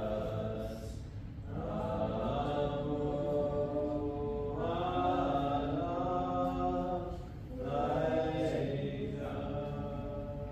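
Slow, chant-like vocal music: long held notes in chords that change every two to three seconds, with brief dips in level about a second in and again near the three-quarter mark.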